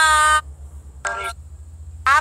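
A person's voice holding a long sung note that cuts off abruptly, then a short note about a second later, with another note swooping up at the end.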